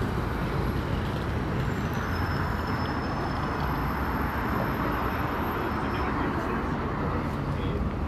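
City street traffic noise, swelling in the middle as a vehicle passes, with a faint high whine for a few seconds.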